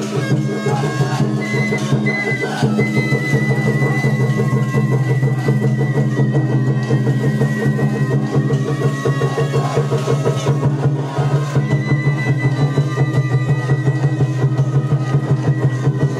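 Japanese festival hayashi music: fast, steady taiko drumming under a bamboo flute holding long high notes.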